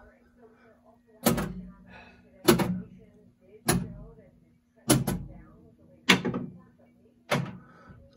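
Pinball machine solenoid coils firing one at a time in a Gottlieb System 80 MPU coil test: six sharp clacks about 1.2 seconds apart, each with a short ringing decay.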